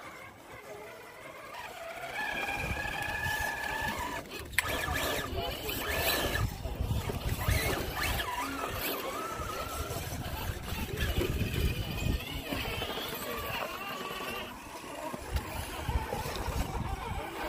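Electric scale RC rock crawler's motor and drivetrain whining, rising and falling with the throttle as it climbs over rock.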